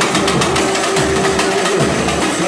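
Loud dance music with a steady drum beat, played over a sound system for dancing.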